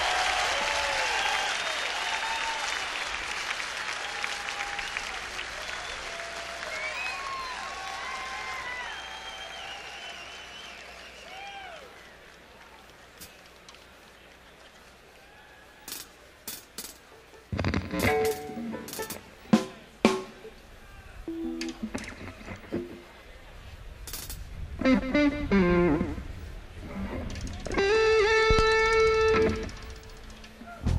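An open-air crowd cheering and whooping, fading away over the first ten seconds or so. After a quiet spell, an electric guitar comes in about halfway with sparse single notes and short chords, ending with a chord held for a couple of seconds near the end.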